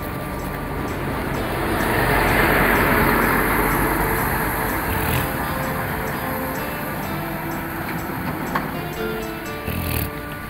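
Background music with steady held notes, and a road vehicle passing close by, swelling up to its loudest about two and a half seconds in and then fading away.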